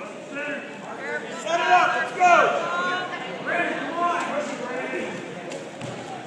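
Indistinct voices of spectators and coaches calling out across the gym, loudest about two seconds in.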